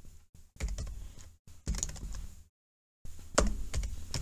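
Computer keyboard typing: short bursts of keystrokes, broken by a brief dead-silent gap about two and a half seconds in.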